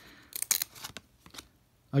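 UV-coated baseball cards being slid and peeled off a stack by hand: a few short, crisp flicks and rubs of card stock about half a second in, and one more about a second and a half in.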